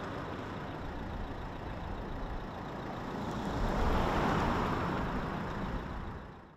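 A car driving past on the road, its tyre and engine noise swelling to a peak about four seconds in, then easing off a little.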